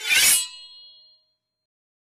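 A single metallic ding-like clang, sharp at the start, with a ringing tail of several high tones that fades out within about a second.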